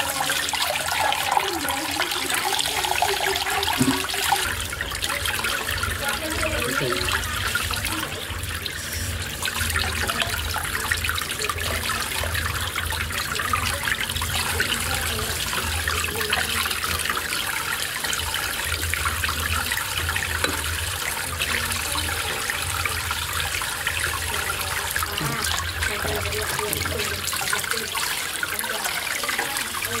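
Water running steadily from pipe spouts and splashing down onto a bamboo mat, with a low steady hum underneath that starts a couple of seconds in.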